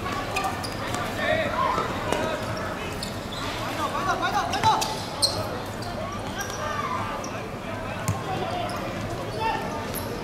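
A football being kicked and dribbled on a hard outdoor court: a scatter of sharp thuds, the loudest about five seconds in, with players calling and shouting to each other.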